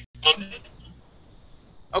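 A short voice sound early on, then the faint steady hiss of a video-call audio line until speech starts again at the very end.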